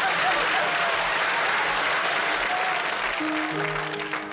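Studio audience applauding, the applause slowly dying away. Near the end, piano notes begin to sound over it.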